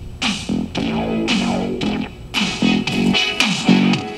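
Guitar-and-bass music with a steady beat, played from a cassette tape on a Sony Walkman and heard through external speakers.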